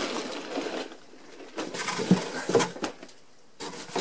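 Cardboard boxes scraping and rubbing as a large LEGO set box is slid out of a corrugated shipping carton, followed by a few light knocks of cardboard against cardboard about two seconds in and more rustling near the end.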